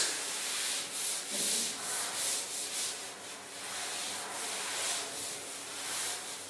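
Blackboard being wiped clean with a duster: a run of short, uneven rubbing swishes, about two to three a second.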